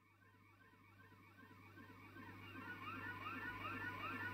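Several faint warbling tones, each rising and falling like a siren about twice a second, fading in and growing louder over a low steady hum: the opening sound of a rock song's intro.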